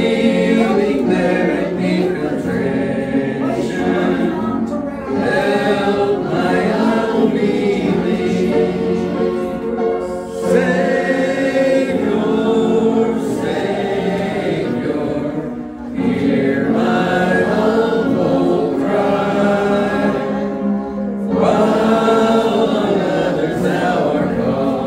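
A church congregation singing a hymn together, with short breaks between sung lines about every five seconds.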